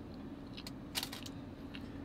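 Quiet chewing of an orange scone, with a few soft mouth clicks, the sharpest about a second in, over a low steady hum.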